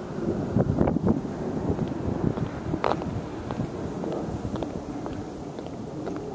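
Wind buffeting a handheld camera's microphone, an uneven low rumble, with a few faint clicks and taps.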